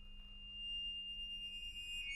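Accordion holding a quiet, very high sustained note of two close pitches that slowly swells. Near the end the pitch steps a little lower.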